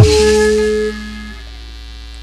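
Sundanese gamelan accompaniment for jaipong ending a phrase on one loud struck stroke whose metal tones ring and fade out over about a second, leaving a low hum.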